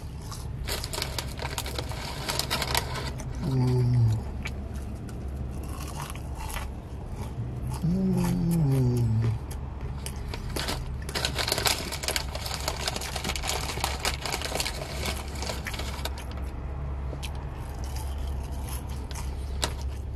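Close-up chewing of McDonald's french fries: many small wet mouth clicks and soft crunches. There are two low "mmm" hums of approval, about 3.5 and 8 seconds in, over a steady low hum.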